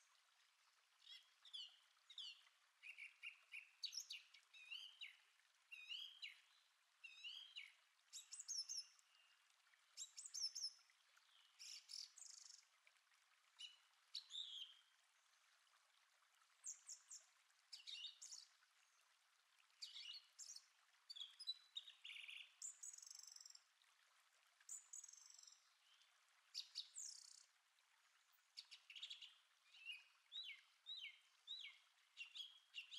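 Faint chorus of wild songbirds, several birds chirping and whistling in short overlapping calls throughout.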